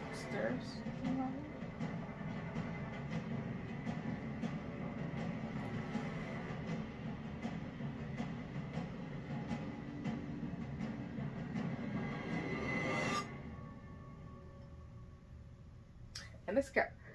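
Horror film soundtrack: a low, rumbling suspense drone that swells and then cuts off suddenly about 13 seconds in, leaving it much quieter.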